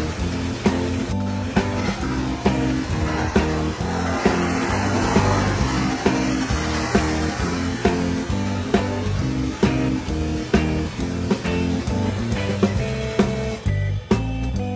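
Background music with a steady beat, about two strokes a second, over a repeating bass line.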